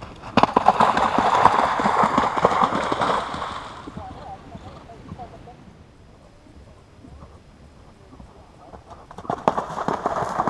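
A horse's hooves splashing through the shallow water of a cross-country water jump, a loud run of splashes for about three seconds. A second bout of splashing starts about nine seconds in.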